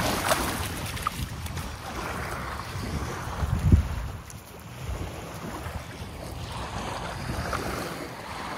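Wind buffeting the microphone at the shore, over the steady wash of surf, with the strongest gust a little under four seconds in.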